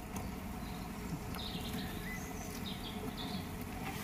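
Faint, steady outdoor background noise with a few soft, indistinct high sounds in the middle and no distinct event.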